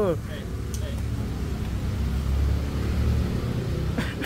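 A low steady background rumble that swells a little around the middle, with a voice trailing off at the very start.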